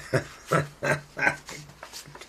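A man laughing in four short, evenly spaced bursts, with a click just before the first.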